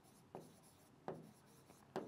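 A pen writing on a board: three faint, short strokes, the first a third of a second in, the next about a second in and the last near the end.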